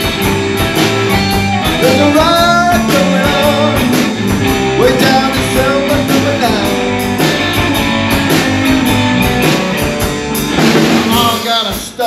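Rock and roll band playing an instrumental break. An electric guitar leads with bent notes over bass and a steady drum kit beat.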